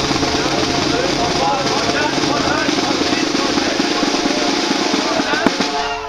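A sustained snare drum roll with many voices shouting over it, cutting off near the end.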